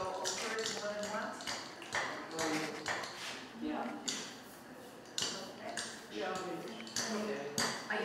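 People talking in the room, away from the microphone and too indistinct for the recogniser, with a few short sharp clinks or ticks among the voices.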